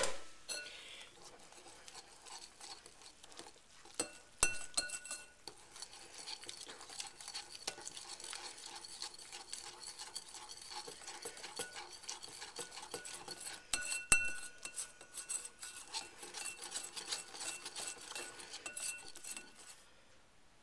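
Metal wire whisk beating a wet chocolate mixture of butter, cocoa and milk in a bowl: a steady run of quick scraping clicks of the wires against the bowl, with louder clinks about four and fourteen seconds in.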